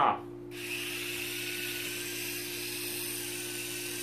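Sky Rover Aero Spin toy drone's small electric motors and rotors starting suddenly about half a second in, then running steadily with a high whine as it flies.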